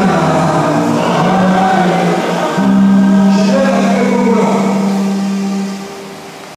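Congregation singing a gospel worship song together, ending on a long held note that fades out near the end.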